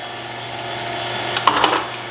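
Electric kitchen mixer running steadily in the background, creaming sugar, butter and egg yolks, with a brief noise about a second and a half in.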